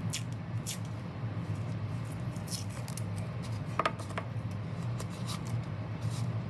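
Masking tape being pulled off its roll and torn, in short scattered crackles and clicks, then pressed down onto paper. A steady low hum runs underneath.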